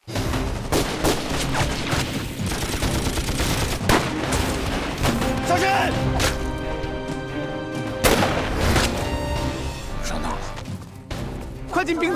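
Staged battle sound effects: gunfire and blasts, strongest about four and eight seconds in, over background music, with a shouted warning about six seconds in.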